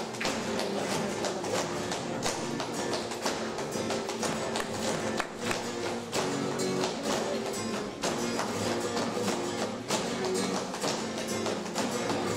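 An Andalusian brass band (agrupación musical) of trumpets, trombones, euphonium and tuba playing a sustained melody together over regular percussion hits.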